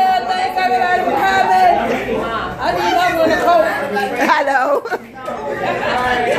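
Several adults talking at once: loud, overlapping group chatter with no single clear voice, briefly quieter about five seconds in.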